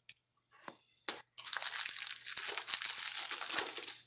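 Cellophane wrapping on a box crinkling as it is handled and pulled off, starting after about a second and a half of near silence.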